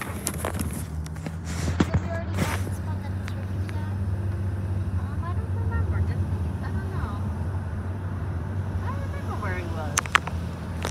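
Car driving, heard from inside the cabin: a steady low engine and road hum, with a few knocks in the first couple of seconds.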